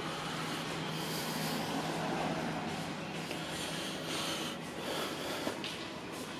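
Steady background noise with a faint low hum, unchanging throughout.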